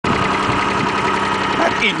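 Maruti 800's 796 cc three-cylinder petrol engine idling steadily, heard from above the open engine bay.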